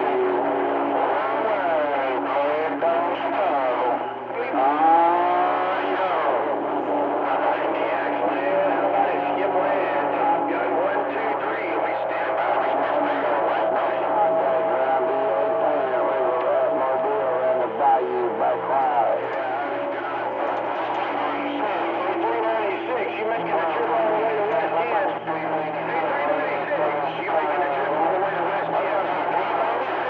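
CB radio receiving on channel 28: several stations overlapping into garbled, unintelligible voices, mixed with whistling tones that slide in pitch and a steady low hum, all with a thin, narrow radio sound.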